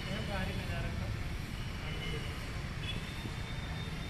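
Steady low rumble of outdoor city ambience, with faint distant voices in the first half-second.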